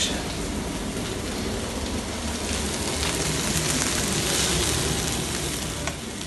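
Laverbread frying in hot bacon fat in a frying pan: a steady sizzling hiss.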